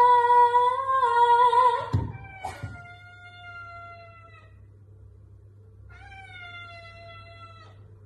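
A woman sings one held note for about two seconds, then a tabby cat answers with two long, drawn-out meows, each sliding slightly down in pitch.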